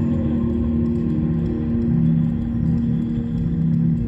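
Slow ambient music made of long held low notes, with a deep rumble underneath.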